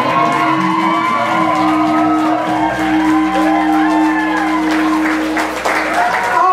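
Live rock band holding a final chord, a steady low note ringing under it, with the audience cheering and shouting over it; the held chord stops shortly before the end.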